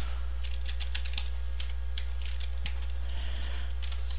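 Typing on a computer keyboard: a quick, uneven run of light keystrokes entering an IP address, over a steady low hum.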